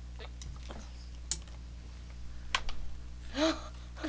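A few sharp clicks and small handling noises over a low steady hum, then a short vocal sound near the end.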